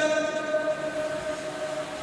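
The echo tail of a man's chanted voice through a loudspeaker system: a steady held tone at the pitch of the chant, slowly fading away.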